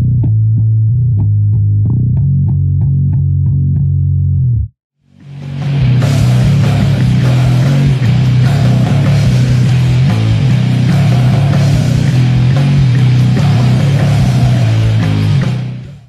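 Electric bass guitar (a Fender Precision Bass played with a pick, in drop B tuning) playing a low riff on its own in evenly picked notes. It cuts off after about four and a half seconds, and after a short pause a full, loud band mix with distortion fades in under the bass, plays on, and fades out near the end.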